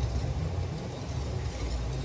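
Wire whisk stirring thickening kaya custard in a steel pot set over a double boiler, heard as faint scraping over a steady low rumble from the gas burner and the boiling water beneath.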